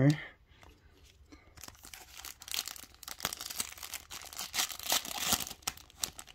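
Foil wrapper of a Panini Prizm football card retail pack being torn open and crinkled in the hands. The crackly rustle starts about a second and a half in and runs until near the end, after a few faint clicks.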